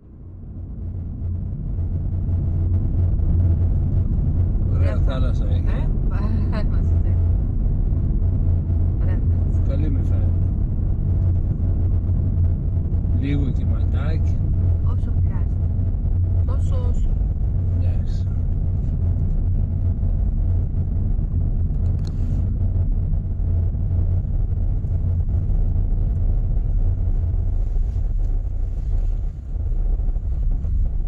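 Car driving, heard from inside the cabin: a steady low road-and-engine rumble that fades in over the first couple of seconds, with occasional quiet talk.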